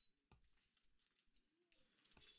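Near silence: room tone, with one faint single click about a third of a second in, a computer mouse being clicked.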